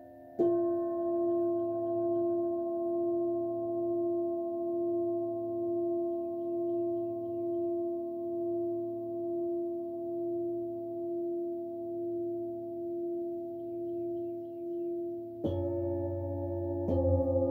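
Metal singing bowl struck once about half a second in, then ringing on in a long, slowly fading tone that wavers evenly in loudness. Another bowl, deeper, is struck near the end.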